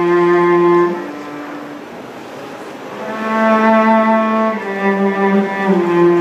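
Solo cello bowed in a slow melody of long, held notes; the playing drops soft about a second in and swells back up about three seconds in.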